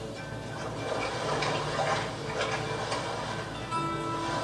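Film soundtrack music with a wash of water-like noise under it, played through a TV's speaker in a room.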